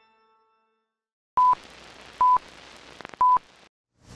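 Three short electronic beeps of one steady high tone, about a second apart, over faint tape hiss, with a few small clicks just before the third beep.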